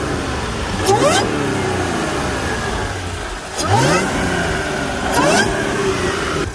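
Audi S5's 3.0-litre supercharged V6, fitted with an open cone air filter in place of the stock airbox, revved three times from idle. Each rev climbs quickly and falls back slowly.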